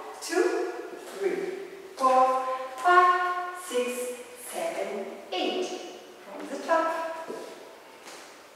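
A woman's voice singing a melody, some notes held steady for up to about a second, with no beat or bass beneath it.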